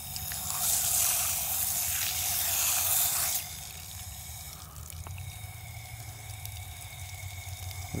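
Water dripping and trickling from a wet mesh screen filter holding sand and rock sieved out of clay slurry, louder for the first three seconds or so, then quieter.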